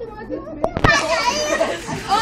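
Children's voices shouting and calling out in play, louder in the second half, with a single sharp knock a little under a second in.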